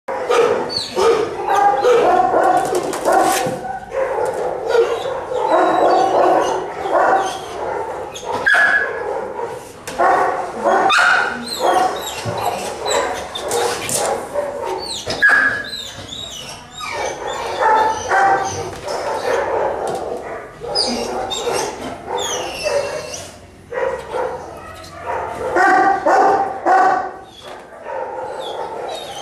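A dog vocalizing in long runs of rising and falling cries, with only short breaks.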